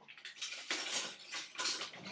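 A metal spoon scraping and stirring rice in a pan, in about five short strokes.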